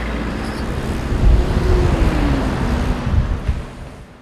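A road vehicle passing by: a loud rushing noise with a low rumble swells up, holds, and fades away near the end, with a faint pitch that drops as it goes past.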